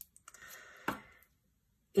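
Metal tweezers handling a small sheet of mini Stampin' Dimensionals adhesive foam dots: a faint rustling with a single sharp click just under a second in.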